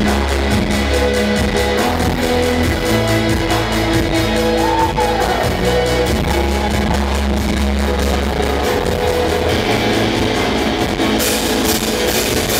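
A live rock band plays loud, with electric guitars, bass guitar and a drum kit. Sustained low bass notes run under the guitars, and the cymbals get louder near the end.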